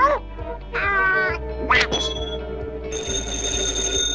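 Cartoon soundtrack: Donald Duck's quacking voice squawking in short bursts over orchestral music, then a steady high-pitched tone held through the last second.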